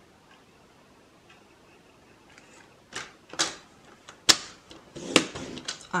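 Handling of a Stampin' Up paper trimmer with a scoring blade as a card base is scored: after a quiet first half, a string of sharp plastic clicks and taps from the trimmer and the cardstock, the loudest a little past two-thirds through.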